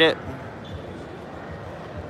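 Steady, even background noise of a large indoor exhibition hall, with no distinct event standing out.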